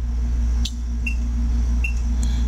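Two short, high beeps from a GW Instek analog oscilloscope as its trigger-source button is pressed, stepping the selection to channel 1, with a click a little over half a second in. A steady low hum runs underneath.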